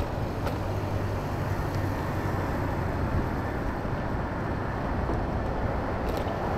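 Steady rumble of riding an electric scooter: wind and road noise with a low steady hum and a few faint clicks.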